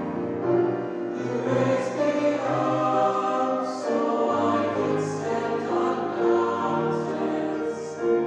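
A mixed high-school choir of male and female voices singing in harmony, holding long sustained chords; the lowest voices move to a deeper note about halfway through.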